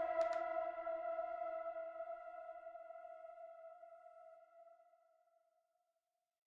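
A single held electronic note, the last note of the outro music, ringing on and slowly fading out over about five seconds.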